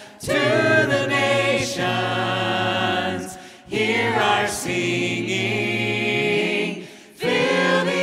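Voices singing a worship song a cappella in harmony, with no instruments. It comes in sustained phrases with brief breaks for breath about three and a half and seven seconds in.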